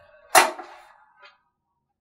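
Chopped fennel being swept by hand off a plastic cutting board into a bowl: one short swishing scrape about a third of a second in, then a faint tap about a second in.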